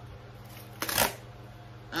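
A white cardboard mailer box handled, with one short rustle of cardboard about a second in.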